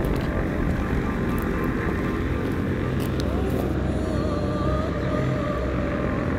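Steady aircraft engine rumble on an airport apron, with a faint whine that rises about three seconds in and then holds.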